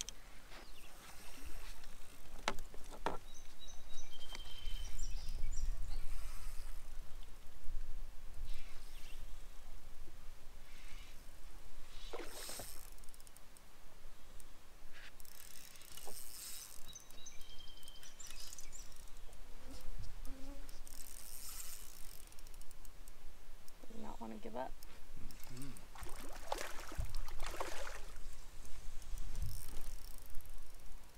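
Wind rumbling on the microphone, strongest early on, with scattered short splashes and bumps as a hooked fish is played at the boat's side and brought to the landing net.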